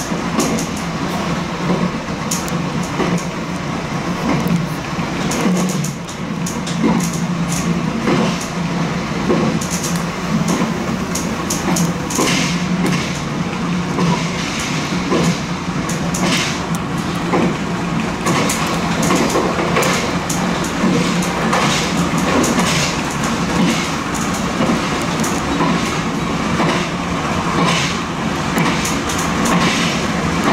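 Nankai limited express electric train running at speed, heard from behind the driver's cab: a steady running drone with frequent short, sharp clicks of the wheels over rail joints and points.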